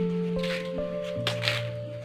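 Background music with long held notes. Over it come two short wet hissing noises, the second about a second and a half in, as a mouthful of water is spat out in a spray.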